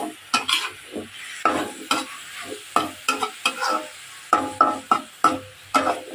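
Metal spatula scraping and stirring in a black kadai with quick, irregular strokes, a few a second, while a green chili paste sizzles in the oil.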